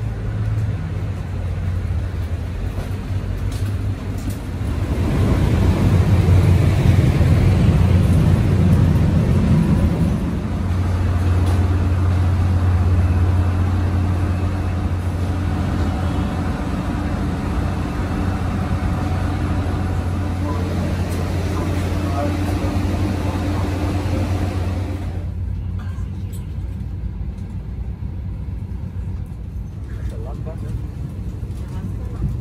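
Steady low machinery hum of an airliner and its boarding bridge at the gate, heard while walking through the jet bridge, swelling louder for a few seconds early on, with voices in the background.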